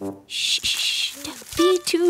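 Cartoon sound effects for a bouncing toy character: a short hissing swish lasting under a second, then a high-pitched character voice with sliding pitch near the end.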